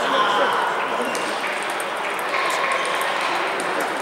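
Table tennis balls ticking irregularly off bats and tables, with a steady murmur of many voices behind.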